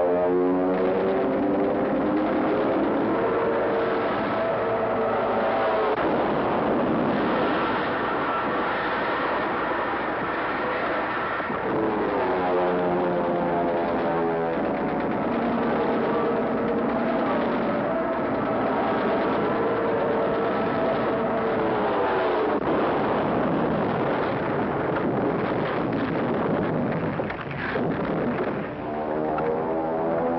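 Air-raid battle din: warplane engines sweeping in pitch as they pass and dive, over continuous anti-aircraft gunfire and explosions.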